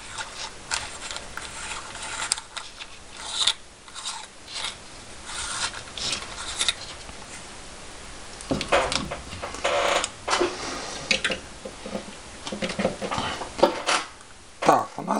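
Plastic LED bulb housing and lamp socket being handled and screwed together: irregular rubbing, scraping and small clicks, the loudest scrapes about two-thirds of the way through and again near the end.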